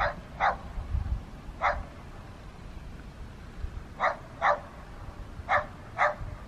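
A dog barking: about six short single barks spread through the stretch, two of them coming in quick pairs.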